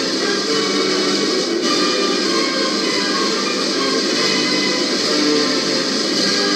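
Music playing from a seven-inch vinyl picture disc on a turntable.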